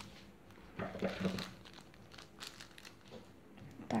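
Small plastic sachet of water beads crinkling faintly as it is handled, with scattered light rustles.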